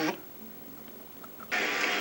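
Basketball arena crowd noise from a game broadcast heard through a TV speaker, low at first and rising about one and a half seconds in.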